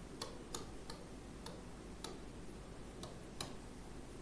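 Chalk on a blackboard while words are written: faint, irregular ticks and taps as the chalk strikes and lifts for each letter.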